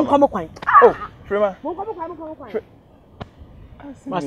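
Loud shouted exclamations with steep rises and falls in pitch during the first two and a half seconds, then a quiet stretch broken by a single click.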